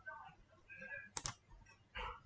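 A computer mouse button clicked, pressed and released as two quick sharp clicks a little over a second in, selecting a menu link.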